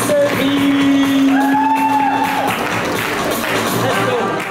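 Dance music playing over the hall's sound, with a singing voice holding one long note from about half a second in for about two seconds.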